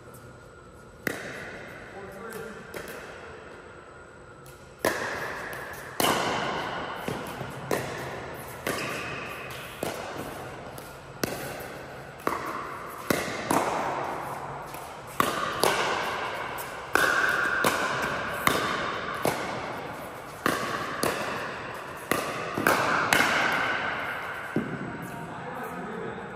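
Pickleball rally: paddles hitting the hard plastic ball back and forth, a string of sharp pops each ringing out in the echo of the big indoor hall. After one early hit, the exchanges come about once a second from about five seconds in.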